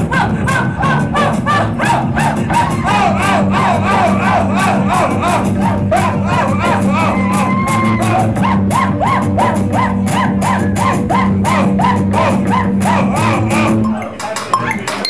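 A live post-punk band playing loud in a small club, heard from inside the crowd, with a fast steady beat under sliding pitched lines and a steady low bass. The song stops right at the end.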